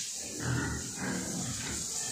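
Landrace pig grunting low, once about half a second in and more faintly again later.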